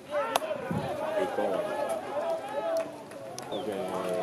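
A single sharp crack of a baseball hitting bat or leather about a third of a second in, then several voices shouting and calling out across the field.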